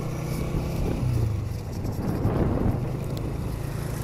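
Honda 125 motorcycle's single-cylinder four-stroke engine running steadily while riding, with wind rushing over the camera microphone.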